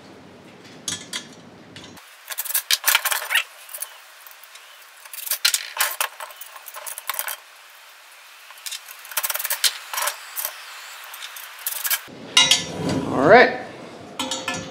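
Small metal clicks and clinks, irregular and sharp, as steel lock nuts and bolts are fitted by hand onto the chrome tubular footrest ring of a swivel bar stool.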